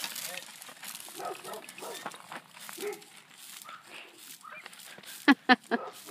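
A dog barking three times in quick succession near the end, short and loud, over faint rustling.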